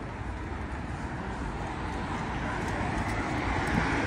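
Steady street traffic noise with a low rumble, with a passing vehicle growing louder in the second half.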